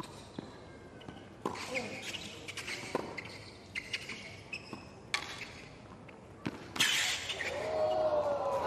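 Tennis rally on a hard court: racquet strikes on the ball roughly every one to one and a half seconds, with short squeaks between them. About seven seconds in, the crowd breaks into cheering and applause that grows louder as the point ends.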